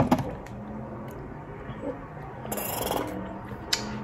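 A woman's wordless reaction just after swallowing a gulp of thickened water: a sharp mouth click at the start, faint low humming, then a breathy exhale about two and a half seconds in.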